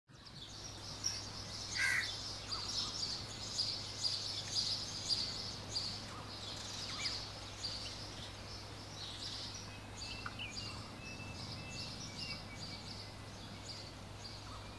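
Many small birds chirping and twittering without pause, busiest in the first half, over a steady low hum.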